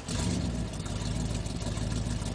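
Car engine running steadily, cutting in suddenly at the start.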